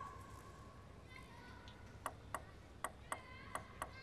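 Table tennis ball clicking off rackets and table in a rally, starting about halfway in: six sharp hits two to three a second over a quiet hall.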